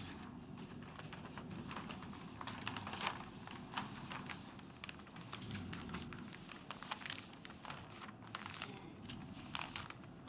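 Paper rustling and crinkling as large paper plan sheets are handled, with irregular crackles and light taps throughout.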